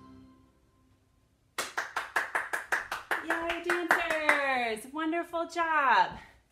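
Music fades out, and after a short pause hands clap rapidly, about five claps a second, for around three seconds. Over and after the claps a voice calls out in long downward-sliding whoops, cheering.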